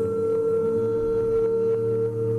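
A cappella vocal harmony holding one long, steady chord, with a clear high note on top.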